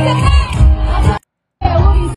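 Live concert music with singing, loud with heavy bass. It cuts off abruptly just over a second in, and a short burst of it comes back near the end.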